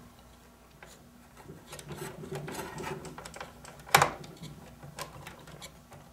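Hands handling cables and a hard drive inside an open desktop computer case: light rubbing and rustling with small plastic clicks, and one sharper knock about four seconds in.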